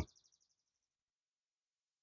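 Near silence: a pause in the narration, with no sound on the track.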